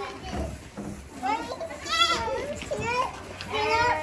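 Young goats bleating: a few high, quavering calls, the first about a second in and another near the end.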